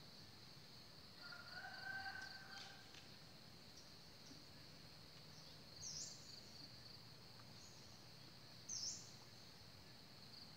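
Faint outdoor ambience: insects chirping steadily, with bird calls over it: a drawn-out call about a second in, then two short high downward chirps around six and nine seconds.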